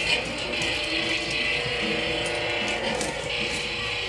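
Battery-powered toy truck making its steady noise.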